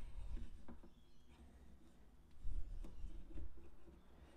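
Faint handling noise as tie wire is pulled tight through wooden beads on a bundle of wooden craft sticks: a few light clicks and some low bumps.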